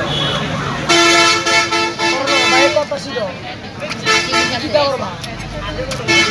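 A horn sounding one steady, unwavering note for about two seconds, starting about a second in, with voices around it.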